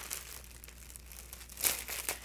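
Clear plastic wrapper crinkling as it is handled, with a louder crackle near the end.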